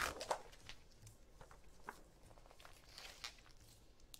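Faint rustling and a few light clicks and taps from a sheet of heat-transfer vinyl being flipped and handled on a craft table. The handling is loudest in the first second.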